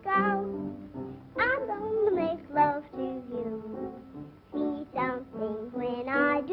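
A woman singing a song in a high voice with vibrato, over light instrumental accompaniment, on an old narrow-band film soundtrack.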